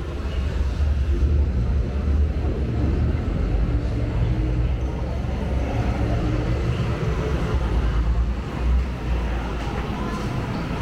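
A deep, steady rumble, like a distant engine drone, that dips briefly near the end.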